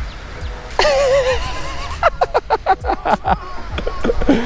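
A man laughing in a quick run of short bursts from about two seconds in, after a drawn-out wavering vocal call about a second in, over background music.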